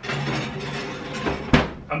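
A small cast-iron pan is slid onto an oven rack with a scraping noise, then the oven door is shut with a single thud about one and a half seconds in.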